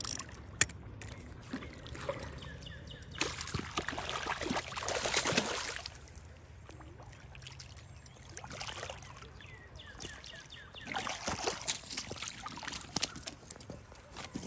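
Water splashing as a hooked gar thrashes and is dragged through shallow water, in two longer bouts, one starting about three seconds in and one about eleven seconds in, with scattered sharp clicks between.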